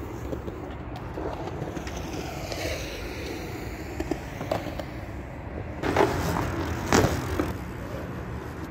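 Wheels rolling on the concrete of a skatepark over a steady low rumble, with two sharp clacks on the ramps about three-quarters of the way through, the second the loudest.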